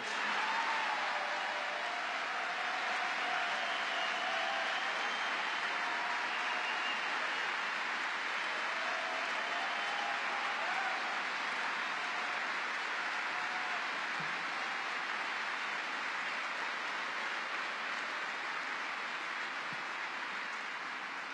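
A large audience applauding at length, with a few cheers in the first seconds, easing slightly toward the end.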